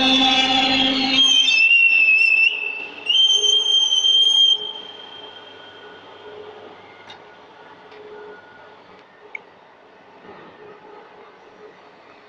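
Semi-automatic pipe bender bending a steel tube: a loud steady squeal for the first second, then a higher squeal around two seconds in and another near four seconds. After that the machine runs on as a low, even noise with a few faint clicks.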